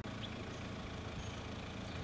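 Steady low rumble of engines, like traffic idling on a street close by.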